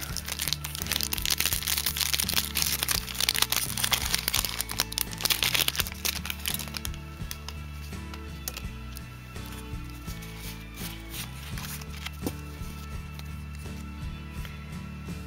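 Foil booster-pack wrapper crinkling and tearing as it is ripped open, dense crackling for the first six or seven seconds, then quieter handling, over steady background music.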